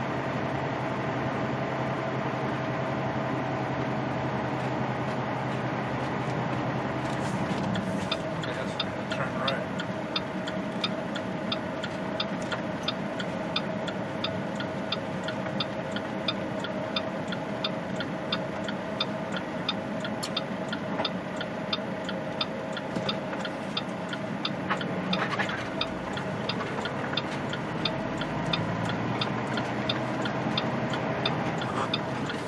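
Semi truck's diesel engine and road noise heard inside the cab with a steady hum. About eight seconds in, the turn-signal flasher starts clicking evenly, about two clicks a second, as the rig turns.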